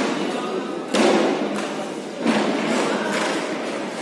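Two heavy thumps, about a second in and again about a second later, over a steady background of crowd chatter.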